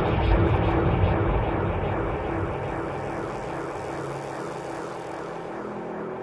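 A steady rumbling drone with a low hum, gradually growing fainter.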